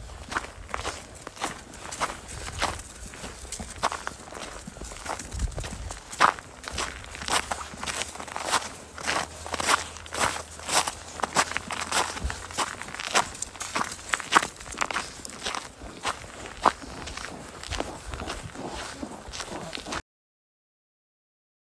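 Footsteps crunching in packed snow at a steady walking pace, about two steps a second.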